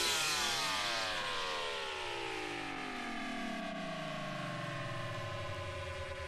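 Closing bars of a deep house track, with no beat: a synth sound sliding down in pitch through many layered tones and fading into a low steady drone.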